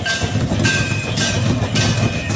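Rhythmic folk drumming with metallic jingling, about two beats a second, accompanying a group dance.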